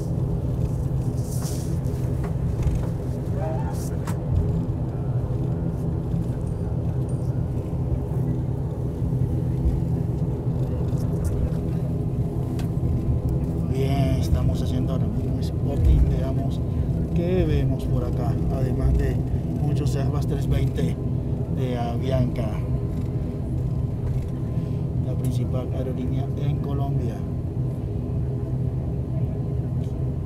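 ATR-72 turboprop engines and propellers running steadily, heard inside the cabin as the aircraft taxis: a constant low rumble with several steady hum tones layered over it. Faint voices come and go in the background around the middle.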